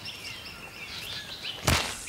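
Rainforest birds chirping in the background. Near the end comes a sudden, loud, brief burst as a slingshot fires a throw line up into the tree canopy.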